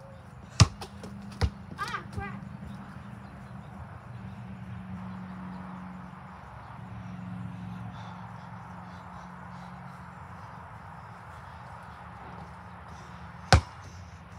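Basketball bouncing on hard ground: two sharp bounces within the first second and a half, a couple of smaller knocks just after, then one loud bounce near the end.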